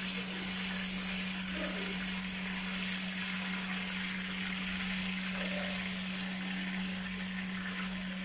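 Fish frying in hot oil in a pan, a steady sizzle, with a steady low hum underneath.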